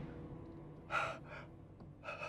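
A man gasps twice in quick succession about a second in, short sharp breaths, while the ringing of a revolver shot fired just before fades away.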